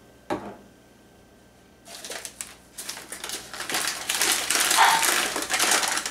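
A single sharp knock, then from about two seconds in, loud crinkling and rustling of a paper sugar bag being handled and opened.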